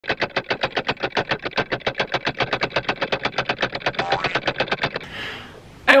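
Edited intro sound effect: a fast, even train of pulses, about eight a second, with a brief tone near the end of the pulses, fading out about five seconds in.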